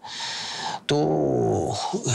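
A man's voice making a hoarse, breathy hiss and then a low, gravelly growl from the throat, a demonstration of the throat-scraping strain of shouting an anime character's lines.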